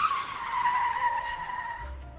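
A long, high squeal from a vehicle in street traffic. It starts sharply, dips slightly in pitch and then holds steady for nearly two seconds.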